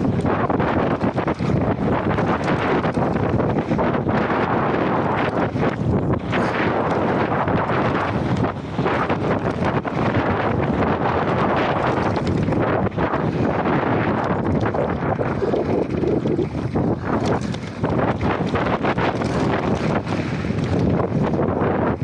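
Wind buffeting an action camera's microphone on a mountain bike ridden fast down a dusty dirt trail, mixed with the constant rumble and rattle of the tyres and bike over the rough, gravelly surface.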